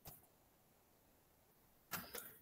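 Near silence, broken only by a faint click at the very start and another just before the end.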